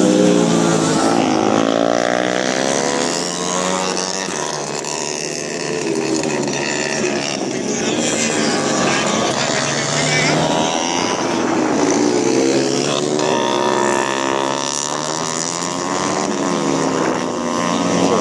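Several 150 cc racing motorcycles, two-strokes and four-strokes together, revving through the corners, their overlapping engine notes rising and falling over and over as they brake and accelerate.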